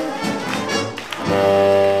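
A live swing jazz band with horns playing up-tempo for solo jazz dancers. About a second in, the band swells into a loud, held chord.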